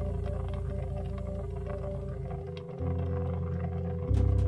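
Live jazz trio improvising: a Hammond B-3 organ holds a sustained chord over long low notes on electric bass, with only light cymbal taps from the drums. The bass moves to a new note about halfway through.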